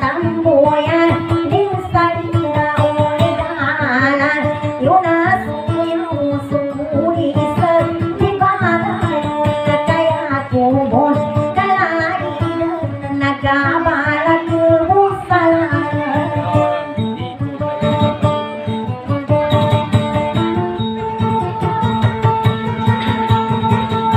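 A woman singing a Maguindanaon dayunday song in a sliding, wavering melody, accompanied by her own plucked acoustic guitar.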